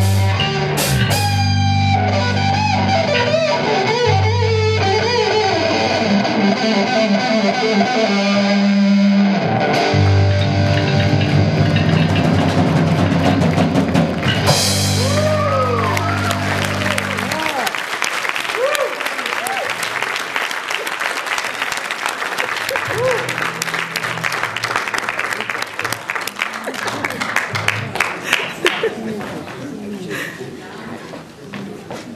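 A live rock trio of electric guitar, electric bass and drum kit plays the final bars of an instrumental piece, stopping a little past halfway through. An audience then applauds.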